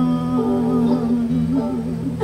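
Live song: a woman's voice holds one long, slightly wavering wordless note over electric guitar.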